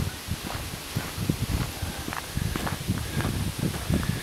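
Footsteps on a gravel road with wind rumbling on the microphone: an uneven run of low, soft thumps.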